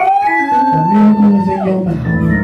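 Church organ chords under a wordless voice that slides up into one long high held note and drops away near the end.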